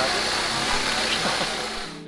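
Steady outdoor rushing noise with faint scattered voices of people nearby, fading down near the end.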